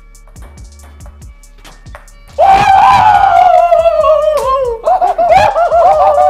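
Faint background music, then about two and a half seconds in a man's loud, long shout starts suddenly, its pitch sliding slowly down and wavering near the end.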